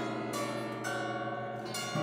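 Acoustic guitar quartet played with long rods across the strings: bell-like ringing notes over a low sustained drone, with new notes struck a few times.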